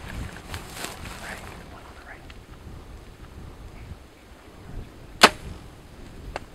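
A compound bow being shot: one sharp snap of the released string about five seconds in.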